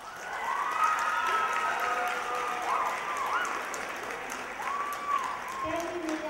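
Audience applauding, with high drawn-out cheers and whoops over the clapping.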